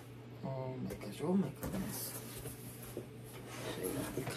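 A woman's voice making short wordless murmurs and exclamations, with faint cardboard handling as a shipping box is opened.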